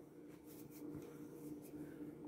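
Quiet kitchen room tone with a faint steady hum, and soft rustling as a bottle of dressing is picked up and turned in the hand.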